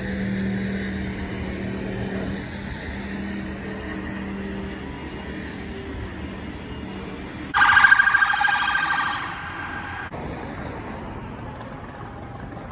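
Street hum from an engine over the first few seconds, then a loud, rapidly pulsing electronic alarm tone that starts suddenly about seven and a half seconds in and lasts about two seconds before dying away.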